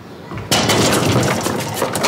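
Loud clatter and rattling at a glass-paned front door with metal fittings, starting suddenly about half a second in and going on as a dense run of knocks and rattles.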